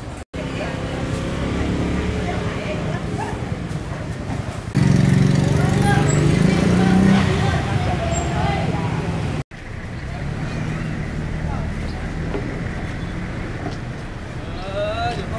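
Busy outdoor market ambience: many people talking over one another, with a vehicle engine running underneath, louder for a few seconds in the middle. The sound drops out abruptly twice, very briefly.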